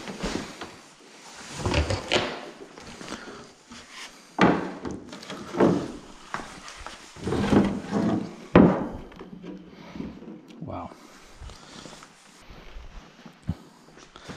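Stiff carbon-Kevlar side skirt panels being handled in and out of a cardboard box: several dull knocks and scrapes against cardboard and floor, the loudest about two-thirds of the way through.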